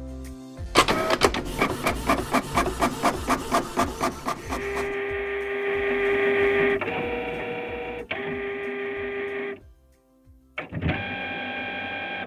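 Logo sound effect: rapid, even clicking, about four a second, for a few seconds, then a held electronic tone that steps up in pitch partway through, breaks off briefly near the end and comes back.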